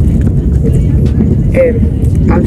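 Steady low rumble of a car heard from inside its cabin, with a brief voice about one and a half seconds in.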